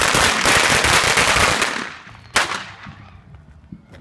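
A string of Black Cat firecrackers going off in a fast, dense run of bangs for about two seconds, then one more single bang a moment later.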